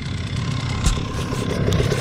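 Enduro dirt bike engine idling steadily, with a couple of sharp clicks about a second in and near the end.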